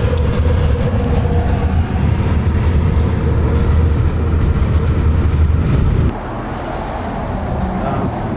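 Road noise inside a moving car at freeway speed: a loud, steady low rumble of tyres and engine. About six seconds in it gives way to a quieter, lighter traffic noise.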